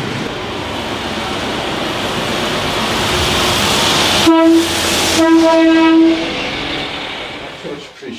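A touring coach's engine and tyre noise building as it draws near, then two blasts of its horn on one steady pitch, a short one followed by one about a second long.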